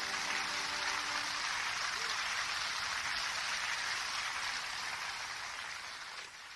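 Audience applauding as a song ends: dense, steady clapping that fades near the end, while the song's last held chord dies away in the first second or so.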